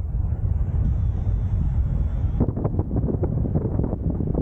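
Airflow rushing over the action camera's microphone in flight under a paraglider, a steady low rumble. About two and a half seconds in it breaks into a rapid fluttering buffet.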